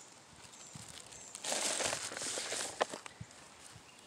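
Plastic bag crinkling for about a second and a half as a hand scoops and sprinkles diatomaceous earth powder, ending in a few sharp clicks.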